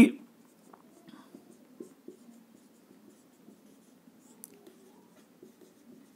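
Marker pen writing on a whiteboard: faint, scratchy strokes with small ticks as the letters are formed.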